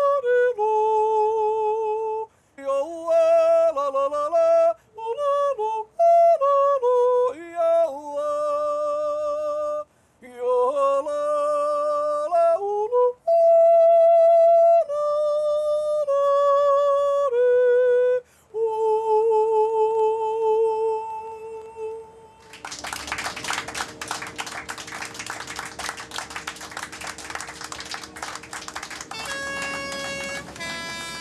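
A man yodelling solo and unaccompanied. He holds long notes with vibrato and leaps abruptly between low and high register, for about twenty seconds. Then a rough, crackling noise takes over for the last seven or so seconds.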